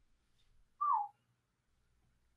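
A single short whistle, one note sliding down in pitch, about a second in.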